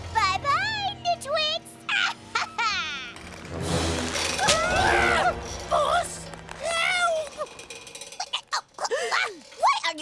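Cartoon character voice sounds without words, such as laughing and straining, over background music. There is a loud, noisy sound effect about four seconds in.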